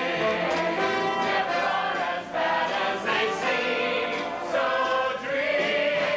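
Music: a group of voices singing together over instrumental accompaniment, with the melody moving from note to note.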